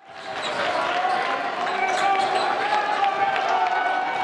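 Live basketball game sound in a gymnasium: a ball bouncing on the hardwood court, with sharp ticks, over a steady murmur of crowd voices. It fades in from silence at the start.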